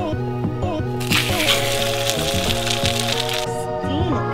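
Background music with a melody over a steady beat. From about a second in, for about two seconds, egg-soaked bread sizzles and crackles loudly in a hot cast-iron frying pan.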